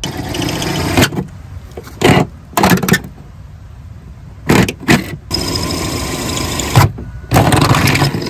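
Cordless drill boring holes through the camper's overhang panel and flashing, the motor running in a series of short bursts that start and stop several times.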